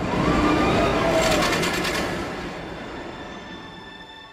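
Rumble of a passing vehicle that swells in, is loudest about a second in, then fades slowly away.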